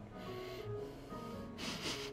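Jazz music playing quietly in the background, with a person sniffing sharply through the nose at a drink held to the face near the end.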